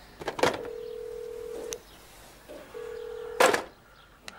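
A rotary telephone handset is handled with a loud clatter, then a steady low telephone line tone sounds for about a second. After a one-second gap the tone comes again and is cut off by a second loud clatter of the handset.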